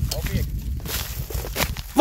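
Rustling and crackling with a low rumble of wind on the microphone, and a faint voice in the background.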